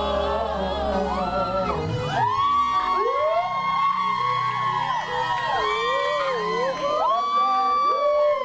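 Live pop-rock band playing, with electric guitars and keyboard. About two seconds in the bass and low end drop out, leaving sustained high notes that bend up and down.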